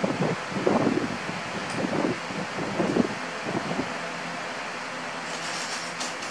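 Plastic Lego bricks clattering and clicking as they are pressed together and rummaged through in a loose pile on a tabletop, with a brighter rattle of pieces near the end, over a steady low hum.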